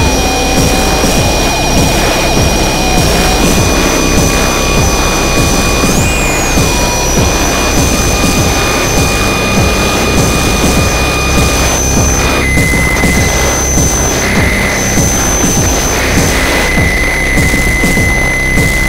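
Harsh power-noise industrial music: a loud, dense wall of distorted noise with steady high whining tones over it. One tone swoops up and back about six seconds in, and the whining tones shift to a lower pitch about twelve seconds in.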